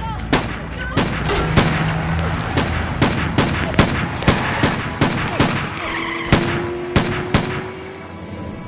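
A string of sharp gunshots, about two a second and unevenly spaced.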